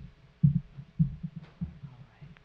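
Footsteps on a wooden floor: four dull, low thumps about half a second apart.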